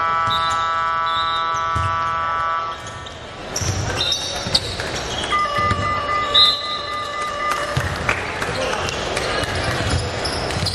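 Basketball bouncing on a hardwood court during live play. Over it run two long, steady, multi-toned sounds, one through about the first three seconds and another for about two seconds in the second half.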